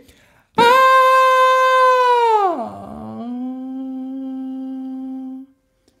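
Man's voice doing a vocal exercise: a loud, high sung 'ah' held for under two seconds, then a steep slide down to a low note. He holds the low note more quietly for about two seconds, darkened with a yawn to reach the low register.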